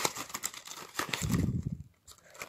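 Cardboard box of nail polish remover wipes being opened by hand: crinkling and light scraping of the cardboard and the packets inside, with a dull low thump about a second and a half in.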